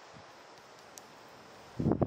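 Quiet outdoor background hiss with one faint click about a second in, then a loud rustling noise starts near the end.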